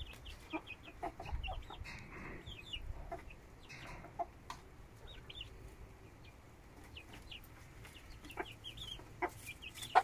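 Domestic chickens clucking softly while chicks peep in short, high notes throughout, with scattered light pecking taps.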